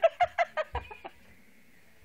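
A burst of high-pitched laughter, a quick run of short ha-ha pulses that fades out about a second in.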